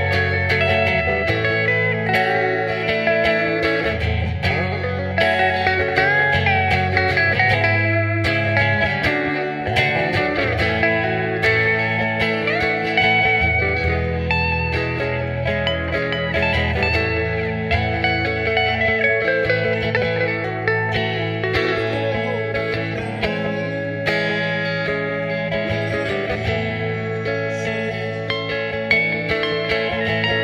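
Electric guitar playing a melodic lead with bent, gliding notes, over sustained low accompaniment that changes chord every few seconds.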